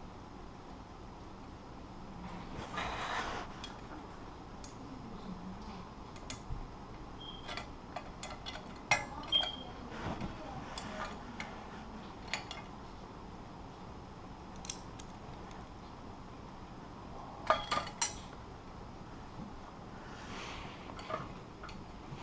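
Scattered metallic clicks and clinks of a metal mounting bracket and its hardware being worked by hand onto a mailbox post's arm, with a short scraping rustle about three seconds in. The sharpest clicks come in a cluster just before halfway and in a pair near the end.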